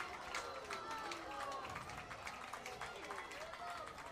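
Faint, distant voices calling out over open-air ambience, with a few light ticks.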